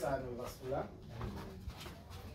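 Indistinct voices of people talking, in a small, crowded room.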